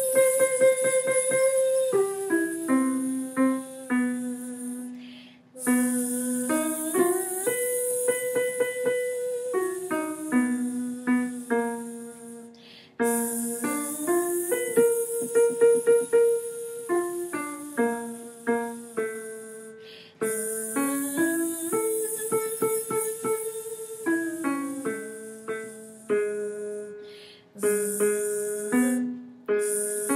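A woman singing a buzzing 'z' up and down a do-mi-sol-high-do arpeggio and back, with piano playing the notes along with her. The pattern repeats several times with short breaks, moving down a half step each time.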